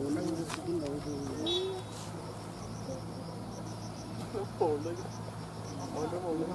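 Insects chirping in the forest undergrowth: a steady, rapid run of short high chirps repeating evenly, over a low steady hum.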